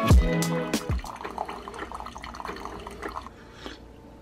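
Background music with a beat that ends about a second in, then a single-serve coffee maker's stream of coffee pouring into a ceramic mug, which trails off near the end.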